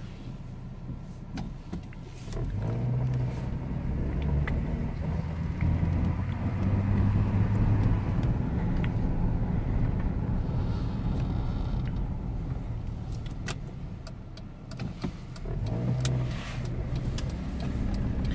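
A 2003 Chevy TrailBlazer's 4.2-litre inline-six engine and road noise, heard from inside the cabin as the SUV pulls away and drives slowly. The hum rises in level about two seconds in, eases briefly and picks up again near the end. The engine runs smoothly and the automatic transmission works again after a shift solenoid replacement.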